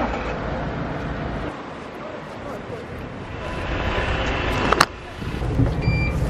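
Road traffic on a busy street, growing louder toward the end as a vehicle draws near; a sharp click comes near the end, followed by the low, steady engine rumble inside a bus and a short beep from the bus's card reader right at the close.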